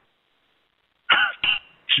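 About a second of silence, then two short non-speech vocal sounds from a person, heard over a phone line.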